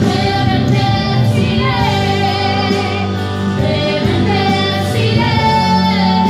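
A woman singing a worship song into a handheld microphone, with vibrato on held notes and a long held note near the end, over a steady sustained low accompaniment.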